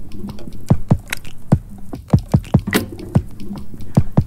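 Background music built on busy percussion: a quick, uneven run of sharp hits and deep drum strikes over low held notes.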